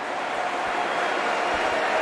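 Football stadium crowd cheering a goal: a steady, fairly loud mass of voices that grows slightly louder.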